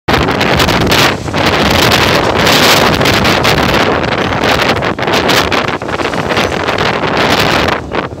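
Strong cyclone wind buffeting the microphone in loud gusts that surge and ease, with brief lulls about a second in and near the end.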